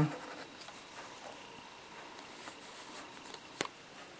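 Faint scratching of a Bic marker's felt tip on paper as a line is drawn, with one sharp click near the end.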